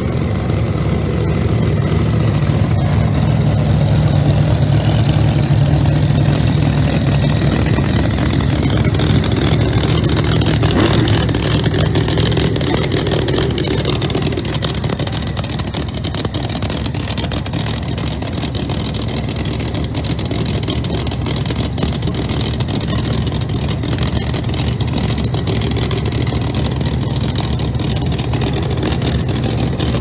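Pro Mod drag cars' engines idling loudly and steadily in the staging lanes, a deep, lumpy drone that is a little louder in the first half.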